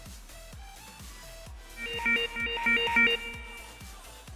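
Background music with a steady beat, and about two seconds in a rapid run of electronic beeps, about seven in a second and a half. This is the FIRST Robotics Competition field's endgame warning, marking 30 seconds left in the match.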